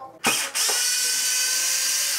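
Small cordless drill/driver running at a steady speed, spinning a small screw out of an RC truck's chassis. A brief burst just after the start is followed by an even motor whine from about half a second in.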